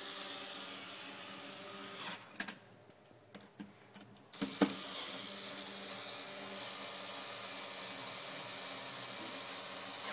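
Cordless screwdriver running steadily as it drives the screws that fix the camera to its back box, in two long runs. Between them comes a quieter pause of about two seconds with a few clicks and one sharp click, as the next screw is set.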